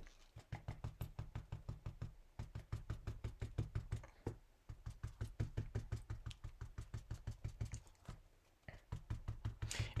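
Wadded paper towel dabbed rapidly on an ink pad and on card stock lying on a desk: quick soft taps, about five a second, in runs with short pauses. The pouncing works pigment ink into the card to smooth out a rough, textured patch.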